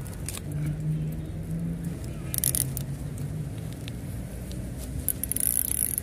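Crinkling and rustling of a plastic glow-stick packet handled in the fingers, in two short bursts, about two and a half seconds in and near the end, with small clicks between, over a steady low engine-like hum.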